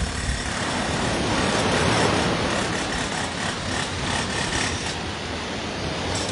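Sea waves washing up onto a sand-and-pebble beach: a steady rushing that swells about two seconds in and then eases off.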